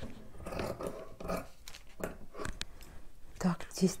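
Faint irregular rustling and light clicks of knit fabric and a paper pattern being handled on a cutting table, with a short spoken word near the end.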